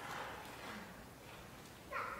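A quiet pause in speech: a man's voice dies away in the room's echo, leaving faint room tone, with a short soft breath near the end.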